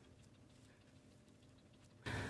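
Near silence, with only a few very faint ticks.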